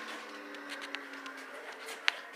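Quiet room tone with a faint steady hum and a few light ticks.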